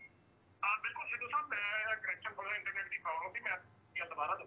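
A person's voice speaking over a telephone-quality line, thin and lacking low tones, starting about half a second in and stopping shortly before the end.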